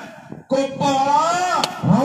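A man's voice with drawn-out, rising and falling pitch, starting about half a second in after a brief lull, with a single sharp click near the end.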